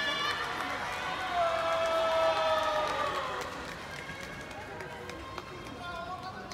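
A sumo yobidashi's sung call of the wrestlers' names (yobiage), long held notes, the second one falling away at its end about three seconds in, over the murmur of the arena crowd.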